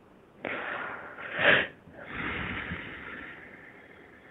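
A woman breathing deeply through the nose close to the microphone: a long breath that swells to a loud sniff about a second and a half in, then a second, softer breath that fades out.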